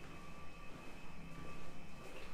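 Steady low machine hum with a rumble underneath and a couple of faint, high, unchanging whining tones.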